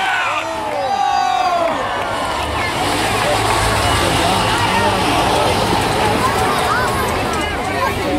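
Spectators shouting and cheering, with the steady low running of racing school bus engines underneath.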